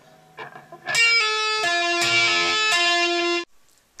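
Electric guitar played through a Marshall amplifier stack: a few faint plucks, then from about a second in a short phrase of held notes stepping in pitch, which cuts off suddenly shortly before the end.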